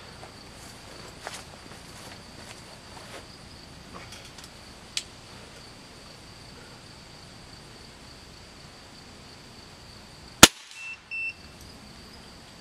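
A single sharp report from a .22 PCP air rifle fired through the chronograph about ten seconds in, followed a moment later by two short high beeps as the chronograph registers the shot. A steady high insect drone runs underneath.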